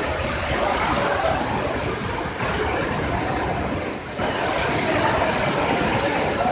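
Strong storm wind rushing and buffeting the microphone, steady, with a brief lull about four seconds in.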